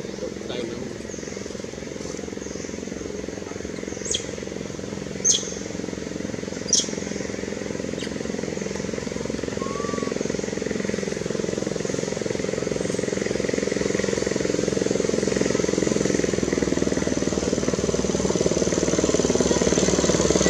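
Outdoor ambience: a steady low hum, like distant engine traffic, that slowly grows louder, with three short sharp high chirps about four to seven seconds in.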